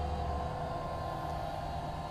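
Steady low electric motor hum from the power lift bed as it raises the bed back up toward the ceiling.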